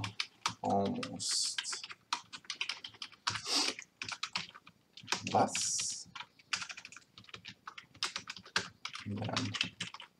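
Typing on a computer keyboard: quick, irregular keystrokes in short runs.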